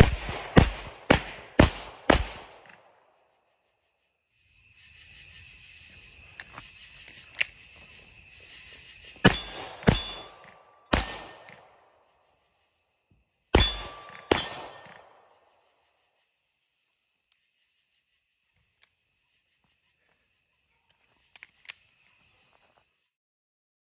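A rapid string of five 9mm pistol shots, about half a second apart, then after a pause five more single shots spread over about five seconds, each with a short ringing echo. Insects chirp steadily between the two strings.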